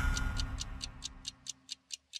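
Clock-like ticking sound effect in a TV programme's title ident, about four to five ticks a second and gradually fading, over the dying tail of the theme music.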